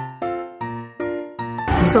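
Background music: a light melody of single chiming keyboard notes, each struck and ringing away, about two or three a second. Near the end, live room sound and a woman's voice come in.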